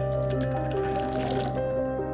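Liquid from a can of chickpeas poured and splashing through a fine metal mesh sieve; the pouring stops about a second and a half in. Background music with sustained notes plays throughout.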